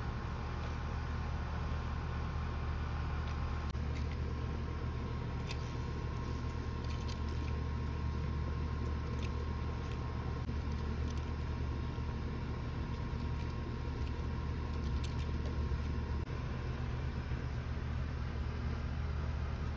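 A steady low mechanical hum with a faint steady tone above it, and a few faint clicks in the middle.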